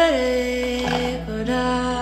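A young woman singing a slow Spanish-language song, holding a long note that slides down just at the start and then holds steady, over an electric guitar whose low note comes in a little under a second in.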